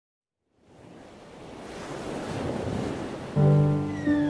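Ocean surf on a beach fading in from silence and growing steadily louder. About three and a half seconds in, sustained musical notes come in over the waves.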